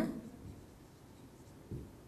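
Faint strokes of a marker pen writing on a whiteboard, with a slightly louder stroke near the end.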